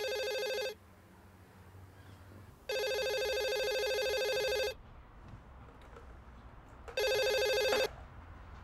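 Cordless landline telephone ringing with an electronic trill in long on-off rings. One ring ends less than a second in, a second lasts about two seconds, and a shorter third is cut off near the end as the handset is picked up.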